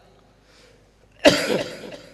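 A man coughs once, close into a microphone, about a second in: a sudden sharp burst that trails off quickly.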